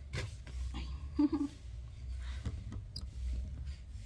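Light rustling and scraping of hands smoothing adhesive contact film onto a notebook cover, with a few small clicks over a low steady hum.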